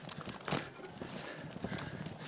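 Irregular knocks and rustling from a handheld camera jostled while a mountain biker moves along a dirt trail. The sharpest knock comes about half a second in.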